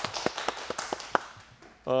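Hand clapping, irregular claps that thin out and fade over about a second and a half. Near the end a man's voice begins a held "ah".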